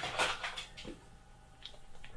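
A few soft knocks and rustles of small objects being handled on a workbench, mostly in the first second.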